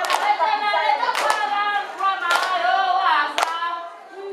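A group of women singing together, with hand claps keeping time: a strong clap about once a second.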